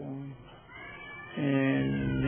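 A man's voice preaching: a phrase trails off, and after a short lull a single syllable is drawn out long on one steady pitch, chant-like, from about a second and a half in.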